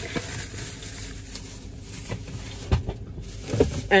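Soft handling noises from grocery packages being moved about, with a few faint knocks over a low background hum.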